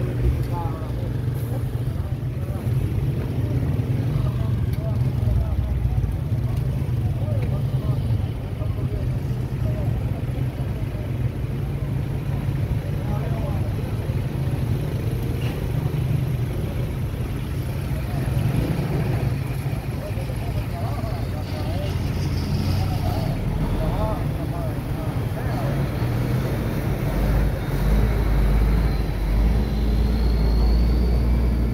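A steady low engine rumble with indistinct voices talking over it.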